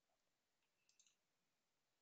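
Near silence, with a faint double mouse click about a second in.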